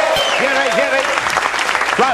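Audience applauding, with a voice talking over the clapping.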